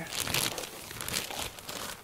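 Clear plastic wrapping crinkling and rustling irregularly as it is handled and pulled off the metal pipes of a reflector frame kit.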